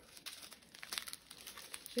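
A strip of small sealed plastic bags of diamond-painting resin drills crinkling faintly as it is handled, a scatter of light, irregular crackles.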